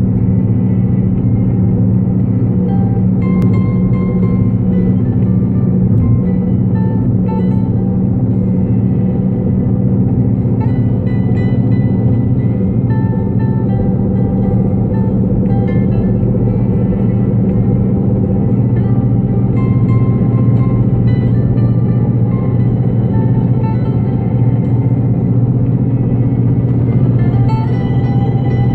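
Steady low rumble of a car driving at freeway speed, heard from inside the cabin, with quieter music playing over it in short, sparse notes.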